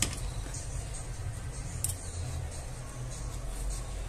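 Soft background music with a low bass line, and two brief clicks from the ribbon bow and thread being handled, one at the very start and one about two seconds in.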